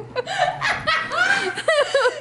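People laughing, in short repeated bursts of laughter.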